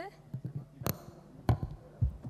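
Handling noise from a desk gooseneck microphone being pushed aside: a sharp click about a second in and a few dull thumps, the loudest about a second and a half in.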